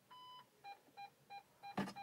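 Lada Vesta's rear parking sensor beeping with reverse engaged on the CVT: one longer beep, then short beeps about three a second. A click near the end comes as the selector lever goes to park, and the beeping stops.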